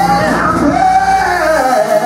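A man's voice chanting loudly in a sung, melodic cadence, with steady instrumental backing underneath. One note is held in the middle of the phrase, and the line falls away near the end.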